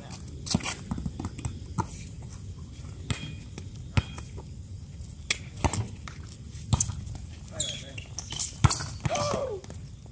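Volleyball rally: a series of sharp smacks of hands striking the ball, one of them a quick attack about seven seconds in. Players' voices call out near the end.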